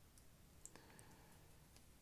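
Near silence, with a few faint, light clicks as a tiny third-generation iPod Shuffle is handled in the fingers.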